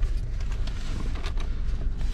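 Mini Cooper S Coupe's turbocharged four-cylinder engine idling steadily, heard from inside the cabin, with a few faint clicks.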